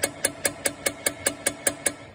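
Small hammer tapping a steel stud extractor into the drilled stump of a broken wheel stud on a Vespa drum: quick, even metal-on-metal taps, about five a second, each with a short ring, stopping just before the end.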